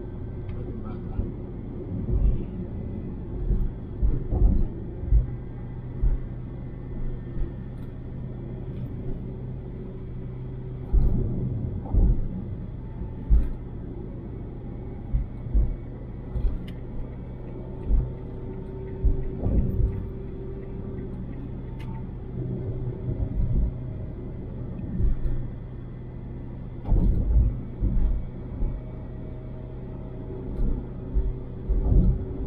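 Car cabin sound while cruising on a highway: a steady low hum of engine and tyres on the road, broken by frequent irregular low thumps.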